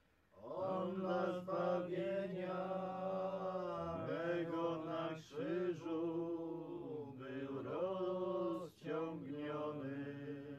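Unaccompanied voices singing a slow Polish passion hymn in long, held, chant-like phrases, with brief breaks for breath about five seconds in and again near the end.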